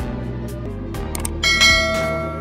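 Notification-bell chime sound effect from a subscribe animation, struck once about one and a half seconds in and ringing on over steady background music.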